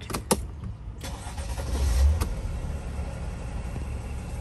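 Mercedes Sprinter van's diesel engine being started: a couple of clicks, then it cranks and catches about a second in, swells briefly around two seconds and settles into a steady idle. This is a restart right after its limp-mode fault codes were cleared.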